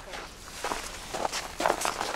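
Footsteps of people walking on packed snow: a run of short, irregular steps.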